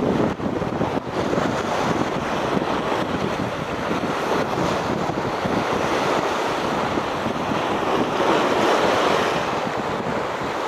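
Sea surf washing against a rocky shore and wind buffeting the microphone, a steady rushing noise that swells a little near the end.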